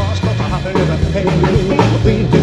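Rockabilly band playing an instrumental break with no vocal: electric guitar over a steady drum beat and bass.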